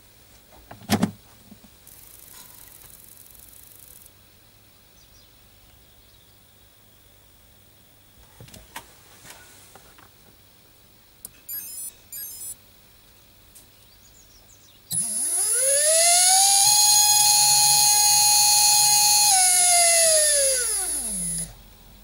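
Small 2430-size brushless in-runner RC car motor, driven through a speed controller and servo tester, spinning up with a rising high-pitched whine, holding a steady pitch for a couple of seconds, then winding down and stopping. Earlier there is a single knock about a second in and a few short high beeps.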